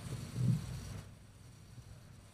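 Microphone handling noise from a lectern microphone being repositioned: a short low thump about half a second in, then the background hiss drops away at about one second in.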